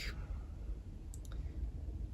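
A pause between sentences: low steady room hum with a few faint small clicks about a second in.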